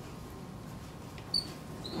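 Quiet room noise during a pause in speech, broken by one short high-pitched squeak a little past halfway, with a fainter one just after.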